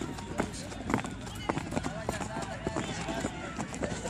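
Many people's feet landing on grass in quick, irregular thuds as a group jumps in place, with voices in the background.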